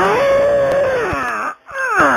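A man's wordless, enraged screaming: one long cry held high for about a second and a half before falling away, then, after a brief gap, a second cry that slides downward in pitch.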